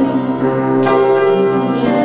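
Upright piano accompaniment with held, ringing chords under a boy's solo singing voice through a microphone.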